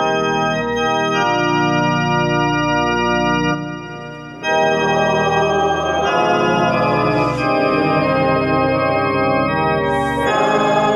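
Organ-style keyboard playing a hymn in sustained chords. The music thins and drops in level a little after three seconds in, then comes back fuller about a second later.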